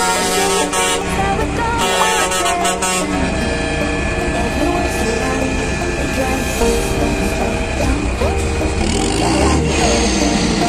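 Truck horns sounding over running diesel truck engines, with voices in the background.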